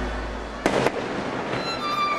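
Fireworks: two sharp bangs close together a little over half a second in, over orchestral music with strings, a new violin note coming in about one and a half seconds in.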